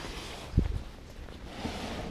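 Footsteps and handling knocks as a handheld camera is carried at a walk, with a loud low thump about half a second in and a softer one later.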